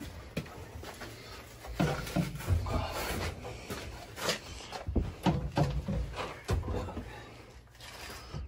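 Irregular clicks and knocks of metal pipe fittings and tools being handled on boiler piping, with a few low muffled vocal sounds.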